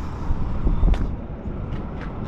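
Low, steady rumble of idling heavy diesel trucks.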